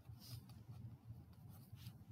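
Faint scratching and light tapping of a stylus writing a word on a tablet screen, in a few short strokes over a low steady hum.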